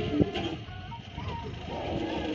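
Diesel engines of a John Deere 5310 loader tractor and a Massey Ferguson 241 DI tractor running steadily while working, with a short knock about a quarter second in.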